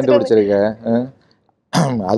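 Only speech: talk in a studio interview, broken by a short pause just past the middle.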